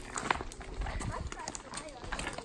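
Footsteps on a loose stony trail with walking sticks knocking against the rocks in irregular clicks, and voices talking faintly.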